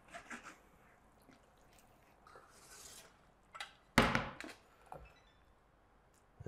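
A spoon stirring and scraping in a pan of thick cream sauce: faint clicks and soft scrapes, with one sharper clink about three and a half seconds in.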